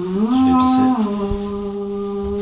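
A single unaccompanied voice singing long held wordless notes. The pitch steps up about a third of a second in, drops back about a second in, and the lower note is then held steadily.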